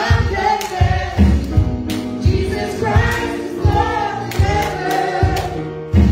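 Gospel worship song sung into microphones by a woman and a girl, over music with a steady beat.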